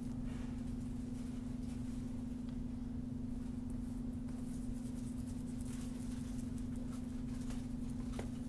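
A steady low hum runs under the whole stretch, with a few faint clicks of a computer mouse and one clearer click near the end.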